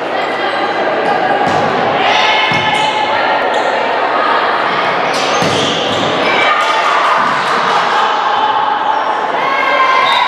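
Indoor volleyball rally in an echoing gym: players' shouted calls and voices over the ball being struck several times, each hit a dull thud.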